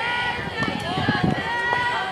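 Several high voices of players and spectators talking and calling out over one another, with no clear words.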